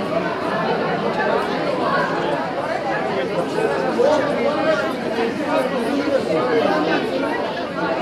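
A crowd of people talking over one another in a large hall: a steady din of overlapping voices with no single speaker standing out.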